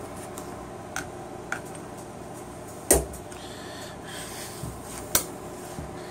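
A Beretta 92 pistol handled against a tan polymer holster on a nylon gun belt as it is put back into the holster: a few light clicks and knocks, the loudest about three seconds in and another about five seconds in, over a steady background hum.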